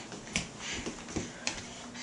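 Light footsteps on a hard tiled floor: four short taps spread over two seconds.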